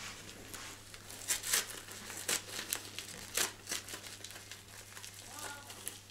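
Small plastic packets crinkling as they are handled and opened by hand, a run of irregular rustles and crackles.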